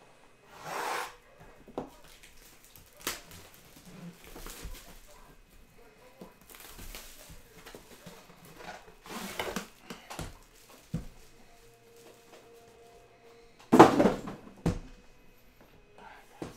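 Plastic shrink-wrap being torn and crinkled off a cardboard trading-card box in several separate bursts. About two seconds before the end there is a loud knock followed by a short click as the boxed aluminium briefcase is handled and set down.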